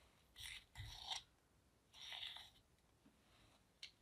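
Faint scraping of a small plastic spatula working thick spackle paste into a small glass mug: three short scrapes in the first half, then a light click near the end.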